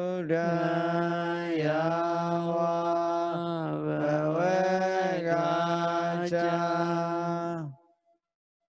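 A Buddhist monk's voice chanting Pali, drawing out one long line on a nearly level low pitch with slight dips and rises. It breaks off shortly before the end.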